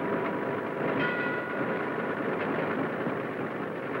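Street traffic of early motor cars, a steady noisy rumble under the hiss of an old film soundtrack, with a short pitched tone sounding about a second in.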